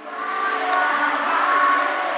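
Children's choir singing, many young voices together on sustained notes, swelling back in after a brief dip in the sound at the start.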